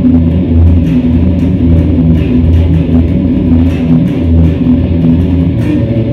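Electric guitar playing continuously over a backing with bass, with sharp hits about twice a second underneath.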